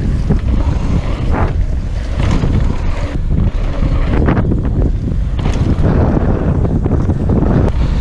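Wind buffeting the microphone of a bike-mounted action camera over the rumble and rattle of a downhill mountain bike's tyres rolling fast on a loose dirt trail, with brief scrapes of tyres sliding through turns.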